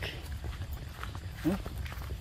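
Footsteps of a person walking over grass and leaf litter, with a steady low rumble of wind on the microphone; a man calls out briefly twice.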